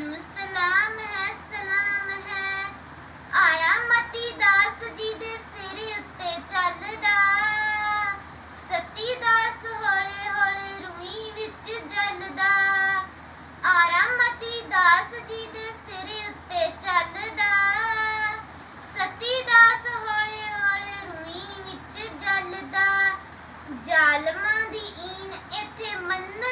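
A young girl singing a Punjabi poem in a melodic, chant-like recitation, one voice in long phrases with short breaths between them.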